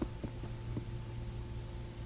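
A steady low hum of recording background noise between spoken phrases, with a few faint ticks in the first second.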